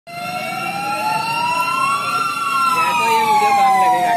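Fire engine siren wailing: its pitch rises slowly for about two seconds, then falls away.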